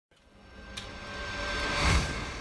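An edited sound-effect riser: a rushing noise that swells steadily louder, with a faint steady high tone running through it, building into a transition.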